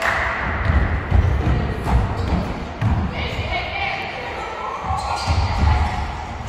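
A football being kicked and bouncing on a wooden sports-hall floor, with repeated thuds of the ball and running feet that echo in the hall.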